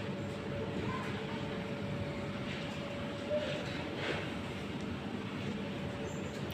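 Steady hum and room noise of a large indoor play hall, with one held tone sounding through it.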